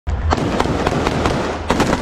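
Close-range gunfire: a rapid string of sharp rifle shots, several a second, from soldiers firing in a close-quarters fight among ruined buildings.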